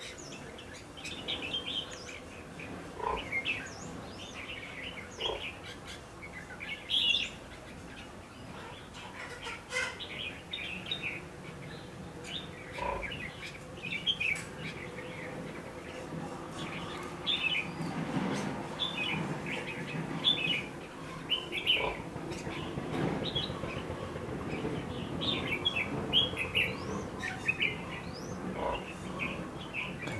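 Red-whiskered bulbuls singing in short, repeated chirping phrases that come more thickly in the second half. This is the fighting song of a decoy bulbul at a trap, answered by a wild bird it is challenging.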